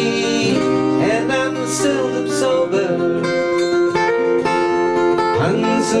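Jumbo acoustic guitar strummed, ringing chords that change every second or so, with a few sharper strum strokes, as an instrumental bridge between sung lines of an Irish folk tune.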